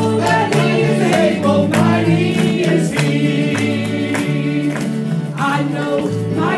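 Gospel song: a vocal group singing over a bass line and a steady beat.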